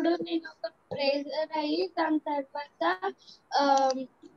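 A young girl's voice in short phrases, likely in Telugu, carried over a video call; the line between talking and sing-song speech is not clear.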